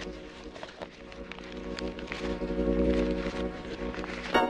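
A lo-fi sampler patch in the Waves CR8 software sampler plays a sustained, pitched chord, triggered from MPC pads. It dips in level about a second in, then swells again.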